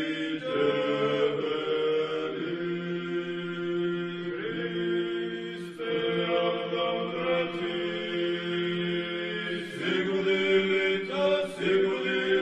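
Orthodox church chant: voices sing a slow liturgical melody, each note held for a few seconds before moving to the next.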